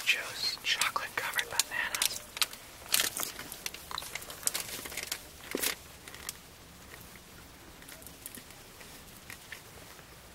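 Paper shopping bag rustling and crinkling as it is handled. A quick run of crinkles and crackles thins out after about six seconds.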